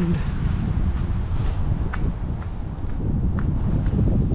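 Footsteps on a concrete sidewalk at walking pace, about two steps a second, over a steady rumble of wind on the microphone.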